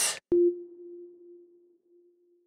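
A single low electronic chime tone starts with a soft click just after the speech ends, holds one steady pitch and fades away over about two seconds. It is the cue that opens the pause for the learner to repeat the sentence.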